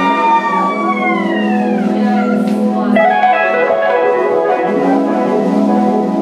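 Live rock band playing an instrumental passage on electric guitars, bass, keyboards and drums. Tones slide down in pitch over the first two seconds, and a fresh chord pattern starts about three seconds in.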